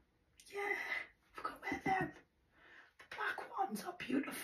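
A woman talking in short phrases in a voice made hoarse by laryngitis; she has lost her voice.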